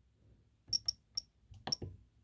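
Jeti DS-24 transmitter's menu navigation sounding four short, high ticks, about a second apart to start and then quicker, as the cursor is stepped down four menu items.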